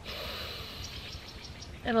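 A woman's deep inhale, a steady breathy hiss lasting nearly two seconds.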